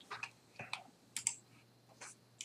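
A few faint, short clicks from a computer's mouse or keys, scattered over two seconds, as a new packet is selected on screen.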